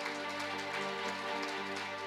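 Audience applauding over background music of steady held chords.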